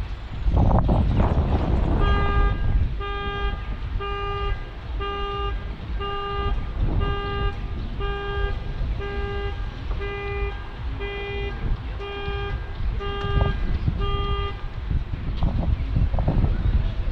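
A horn-like alarm tone sounding in a steady rhythm, about once a second, starting about two seconds in and stopping shortly before the end. A low rumble of wind on the microphone runs underneath, with a loud gust near the start.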